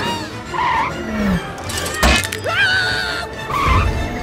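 Cartoon sci-fi flying saucer sound effects: swooping, gliding whooshes as the craft swerves, over background music, with a sharp hit about two seconds in.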